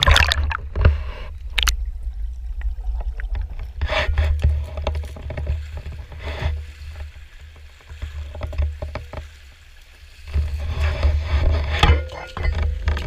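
Water splashing and sloshing as a fish spear is jabbed into a shallow creek at the start and the spearfisher wades on, with several more splashes and a quieter stretch a little past the middle. A low rumble runs underneath.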